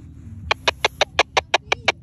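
A fast run of about nine short electronic chirps from a Baofeng BF-F8HP handheld radio's speaker, starting about half a second in, about six a second.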